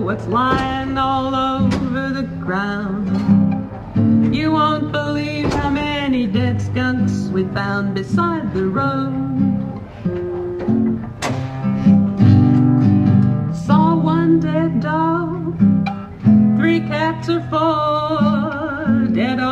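A woman singing a folk-style song with vibrato on her held notes, accompanied by strummed acoustic guitar.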